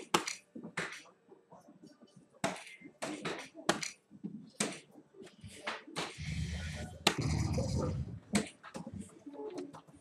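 Soft-tip darts striking electronic dartboards: sharp, irregular clicks scattered through, several at once from the boards around. A louder stretch of noise with a low rumble comes about six seconds in and lasts a couple of seconds.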